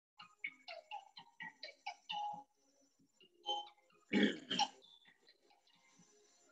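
Short, faint vocal sounds from a person, then a louder pitched vocal sound, like a throat-clearing, about four seconds in.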